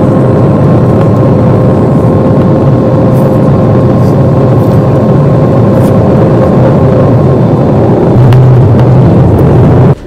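Jet airliner landing, heard from inside the cabin: loud, steady engine and air noise with a steady whine. A low rumble grows louder about eight seconds in.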